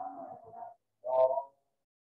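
A person's voice: two short spoken utterances about half a second apart, the words not made out.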